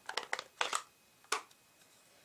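Stampin' Up! plastic ink pad case being picked up and opened: a few short crackles and clicks of hard plastic in the first second and a half.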